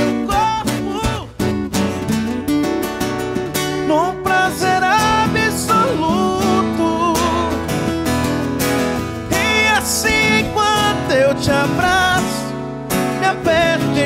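Sertanejo ballad played on two acoustic guitars, with a man singing a long, drawn-out melodic line over the chords.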